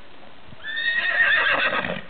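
A horse whinnying once, starting about half a second in: a loud, high call lasting about a second and a quarter that slides down in pitch at the end.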